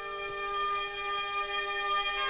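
Film-score music: a single long note held steady at one pitch.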